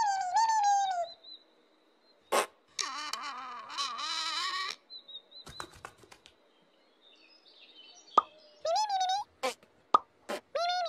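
Squeaky, high-pitched gliding calls of the Pontipine puppet characters, heard at the start and again near the end. Sharp pops and clicks fall between them, along with a brief shimmering, chord-like cluster of sound in the middle.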